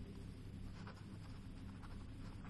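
Faint scratching of a pen on paper, a few light strokes over a low steady hum.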